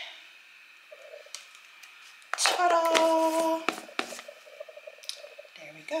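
A woman's voice drawn out on a steady pitch, saying "There we go", with a few faint clicks of a cut-open plastic lotion bottle being handled.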